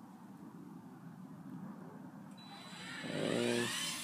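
Small 12 V electric actuator motor of an automatic chicken coop door opener starting about two seconds in and running with a faint rising whine as it swings the door open. A short low hum comes over it near the end.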